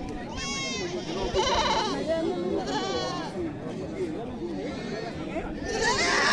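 Goats bleating: four quavering bleats a second or so apart, the last and loudest near the end, over the chatter of a crowd.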